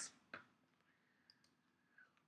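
Near silence with a single faint click about a third of a second in.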